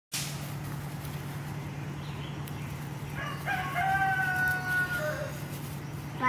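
A rooster crowing once: a single call of about two seconds that ends in a long held note, dropping slightly in pitch at the end.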